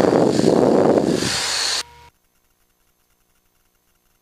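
A rush of hissing noise over the headset intercom for just under two seconds. It drops to a faint hum and then cuts off suddenly to silence.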